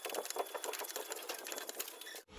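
Plastic spatula working thick, tacky adhesive across the back of a stone tile, giving a fast, steady patter of small sticky clicks and scrapes.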